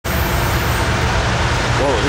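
Steady low rumble of a car passing on the road, with the start of a man's voice near the end.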